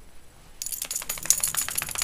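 Metal tags on a schnauzer's collar jingling in a fast, rapid run as the dog moves, starting about half a second in.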